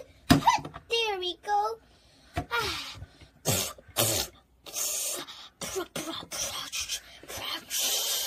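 A person's voice making straining noises for a doll on a toy toilet: a few short pitched, strained vocal sounds near the start, then a series of short breathy bursts, like pushing.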